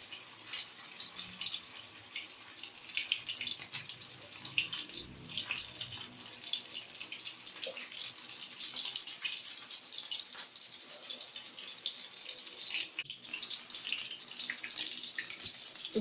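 Tortang dilis, small anchovies bound in an egg and cornstarch batter, frying in shallow hot oil in a wok. It makes a steady, dense sizzle with fine crackles throughout.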